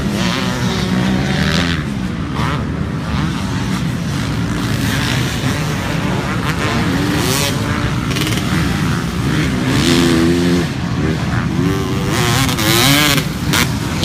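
Several motocross dirt bikes running on a dirt track, their engines revving up and down as the riders throttle through corners and jumps, with pitch rising and falling a few times.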